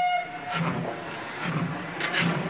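Train sound effect: a horn blast that cuts off about half a second in, followed by the rhythmic clatter of a moving train.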